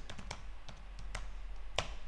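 Typing on a computer keyboard: a quick, uneven run of about a dozen separate key clicks, a few of them louder.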